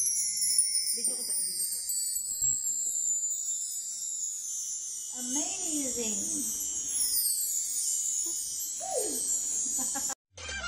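Bar chimes (a mark tree) brushed by hand: many small metal bars ringing in a high, shimmering cascade that sweeps downward in pitch and keeps ringing, with a fresh sweep about seven seconds in.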